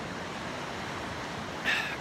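Steady wash of ocean surf breaking on the shore. A man's voice starts near the end.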